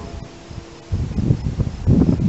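Wind buffeting the microphone in uneven low gusts, which pick up about a second in after a quieter start.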